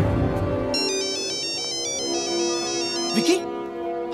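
Mobile phone ringtone: a rapid electronic melody of high beeping notes, starting about a second in and stopping after about two and a half seconds, over a held note of film-score music. A brief voice comes in near the end.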